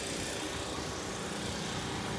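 Steady background noise with a faint, even hum underneath and no distinct events.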